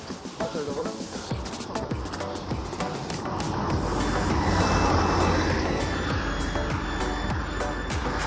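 Background music with a light beat; about halfway through, a road vehicle's engine and tyre noise swell up and stay loud as it drives past.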